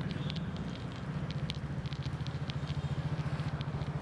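A motor vehicle's engine running steadily: a low hum with an even, rapid pulse.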